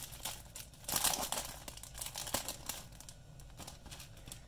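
Clear plastic bag crinkling and rustling as it is handled, in irregular bursts, loudest about a second in.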